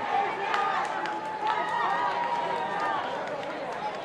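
Rugby players shouting calls to one another during open play on the pitch, several voices overlapping with some calls held long, over a background of crowd noise.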